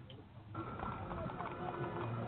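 A brief gap, then the sound effects opening a radio ad come in about half a second in: horse hooves clopping, as on a Victorian street, under steady sustained tones.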